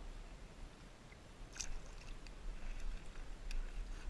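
Low rumble of wind on the camera microphone, with a few faint brief clicks, the clearest about one and a half seconds in and another near the end.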